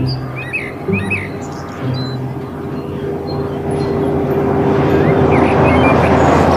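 Car-carrier semi-truck driving on a highway: a steady engine drone with road noise that grows louder toward the end as it comes closer. Birds chirp now and then over it.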